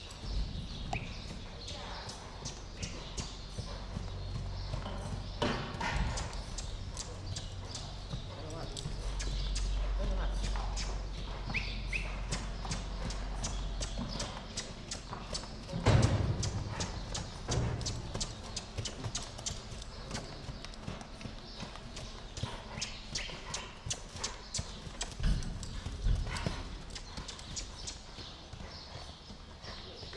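A black Spanish horse stepping and prancing in place while worked in hand, its hooves striking in a quick, rhythmic clatter of several strikes a second. The strikes grow denser and sharper from about halfway on, where one heavy hoof thump stands out as the loudest sound.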